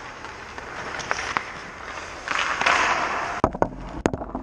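Ice hockey skate blades scraping across the ice, with light stick-on-puck clicks, then a burst of sharp knocks about three and a half seconds in as a puck strikes the camera sitting on the ice and knocks it over.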